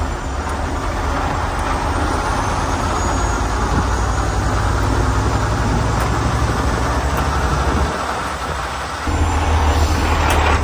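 Semi truck's diesel engine running steadily under load, pulling a loaded trailer along the road. The sound drops off briefly about eight seconds in, then comes back louder.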